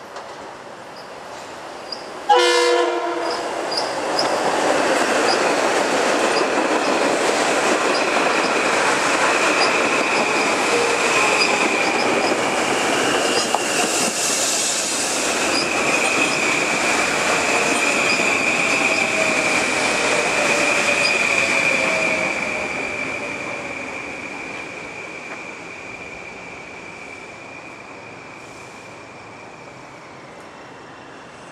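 Metro-North electric commuter train passing through the station at speed. A short horn blast sounds about two seconds in. Then comes a long rumble of wheels on rail with a steady high whine and light rhythmic clicks, which fades away from about two-thirds of the way through as the train recedes, its tone falling.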